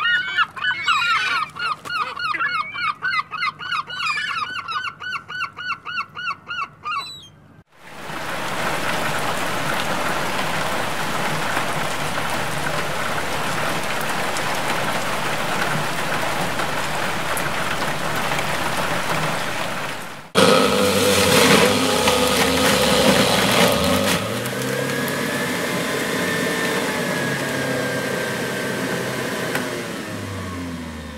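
Seagulls calling in a rapid repeated series, a few calls a second. About eight seconds in this cuts to heavy rain, a steady hiss for about twelve seconds. It is followed by a sudden louder sound with steady tones and gliding pitches.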